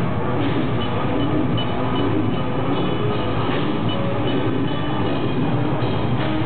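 Death metal band playing live, with distorted guitars, bass and drums in a dense, steady wall of sound.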